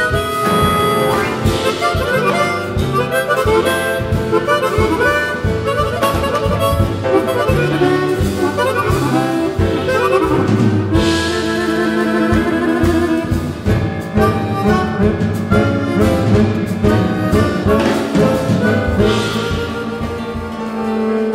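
Two chromatic harmonicas playing a tango melody together, backed by a live band.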